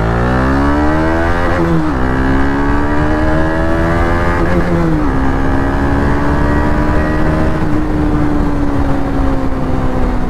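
KTM Duke 250's single-cylinder engine pulling away under acceleration. The revs climb, drop with an upshift about two seconds in, climb again and drop with another upshift about five seconds in, then hold steady at cruising speed with the pitch easing slightly.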